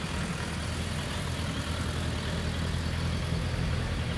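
Suzuki Bandit 1250F's inline-four engine idling steadily through its stock muffler.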